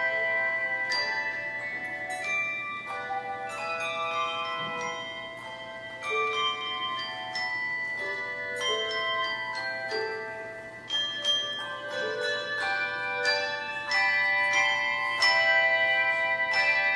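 Handbell choir playing: chords of struck handbells ringing out and overlapping, with new chords struck about once a second.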